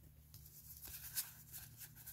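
Faint rustling and light ticks of a stack of Pokémon trading cards being handled and fanned in the hands, with the sharpest tick a little after a second in.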